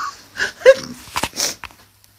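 Short, breathy vocal sounds from a person, broken up by a few quick rustles or knocks; the sound cuts out just before the end.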